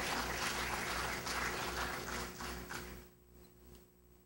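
Audience applause: many scattered claps, fading out about three seconds in.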